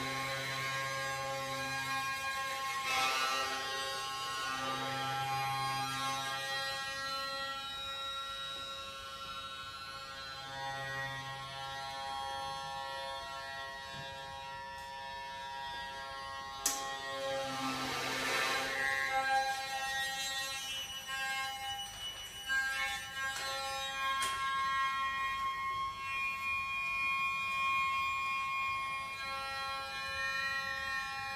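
Hurdy-gurdy playing free improvisation: its wheel-bowed strings hold steady droning tones, with rasping buzzes at times and a low tone that comes and goes every few seconds.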